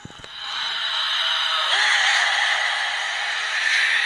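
A film sound effect: a steady hissing whoosh that swells up within the first second and then holds.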